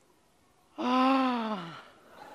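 A single drawn-out vocal 'aah' starts a little under a second in and lasts about a second, held on one pitch before dropping away at the end.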